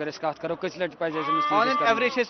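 A sheep bleats once, a held call of about a second starting about halfway through, over a man talking.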